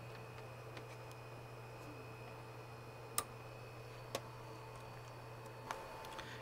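Quiet room with a steady low hum, broken by two sharp clicks about a second apart midway and a fainter one near the end: small clicks from handling network cables and a laptop.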